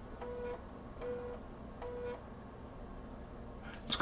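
3.5-inch 1.44 MB USB floppy drive near the end of a format-and-verify pass: the head stepper gives three short buzzes about a third of a second each, evenly spaced under a second apart.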